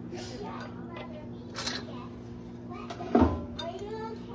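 Kitchen dishware being handled: a light clink about a second and a half in and a louder knock about three seconds in, from small metal aspic molds, a plate and a glass pitcher with a ladle being moved on the stovetop.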